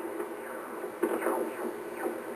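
Receiver audio from a Yaesu FT-950 HF transceiver tuned across the 80 m band in lower sideband: steady static hiss while the dial sweeps, with a short louder gliding swell about a second in. No stations are heard, the sign of an 80 m band that is dead in the daytime.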